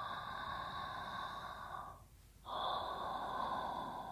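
A man breathing lightly and slowly close to the microphone, in two long breaths; the second begins about two and a half seconds in.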